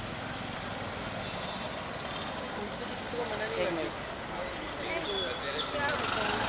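Steady street traffic noise, with people's voices talking in the background from about halfway through.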